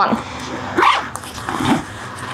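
Rummaging inside a fabric backpack: rustling and small knocks of items being moved about by hand, with a short, sharper sound about a second in.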